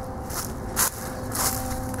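Footsteps crunching on dry leaves and dirt: a few steps, the loudest just under a second in, over a steady low hum.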